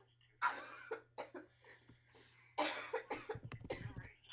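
A person coughing in several bursts: one about half a second in, a shorter one at about a second, and a longer run of coughs from near the end of the third second.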